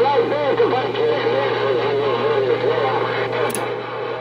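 Galaxy CB radio speaker receiving a transmission: garbled, warbling voices through static over a steady hum, with a sharp pop about three and a half seconds in.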